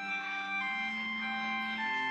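Organ music: slow, held chords, changing about half a second in and again near the end.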